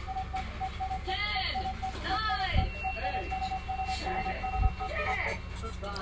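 Backing music starting from a speaker, with a quick, evenly repeating note, a few sweeping sounds and two brief low thumps, before any vocals come in.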